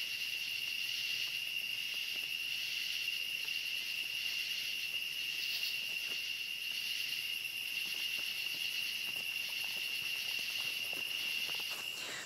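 Steady chorus of crickets and other night insects: a continuous high-pitched trill that does not let up.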